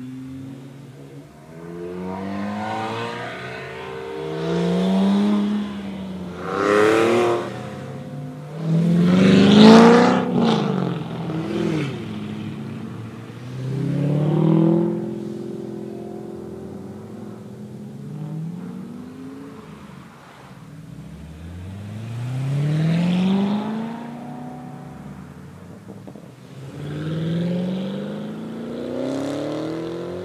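A string of sports cars accelerating hard past one after another, each engine's pitch rising through a gear and dropping at the shift. The loudest pass comes about ten seconds in, with further separate passes after it.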